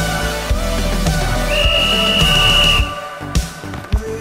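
Background music with one long, steady referee's whistle blast about halfway through. Right after the whistle the music drops back, and two short thumps follow near the end.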